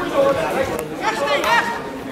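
Spectators chatting at a football match, several voices talking over each other, with one voice rising more strongly about a second in.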